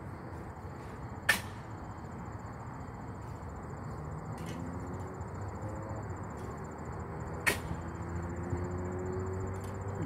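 Yard clean-up outdoors: a steady low background noise with a faint high-pitched trill, broken by two sharp knocks, about a second in and about three quarters through, from tools striking debris.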